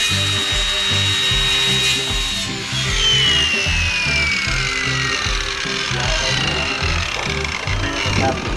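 A handheld circular saw runs with a steady high whine that stops about two and a half seconds in. Its whine then falls in pitch over the next few seconds as the blade spins down. Background music with a steady beat plays throughout.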